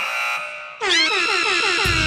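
Dramatic electronic music sting laid over the show: a buzzing tone, then about a second in a quick run of falling swoops that settles into a held chord, with a deep rumble coming in near the end.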